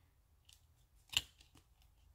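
Handheld paper hole punch squeezed through a cardstock tag: one sharp click about a second in, with a few faint clicks of handling around it.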